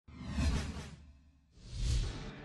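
Two whoosh sound effects for on-screen broadcast graphics, each with a low rumble underneath. The first swells and fades within the first second, and the second rises near the end.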